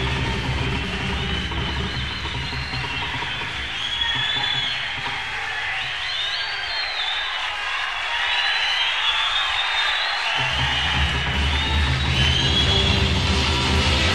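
Late-1960s Detroit hard rock band playing, with high electric guitar lines sliding up and down. The bass and drums fall away for a few seconds in the middle, then come back in about ten seconds in.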